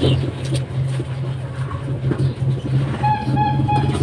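A steady low motor-like hum, with faint knocks of paper egg trays being handled and set on a shelf. A short high pitched call comes in near the end.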